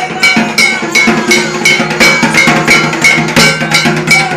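A barrel drum and a metal percussion instrument played together in a fast, steady folk rhythm of about three beats a second. Each stroke carries a short bright metallic ring.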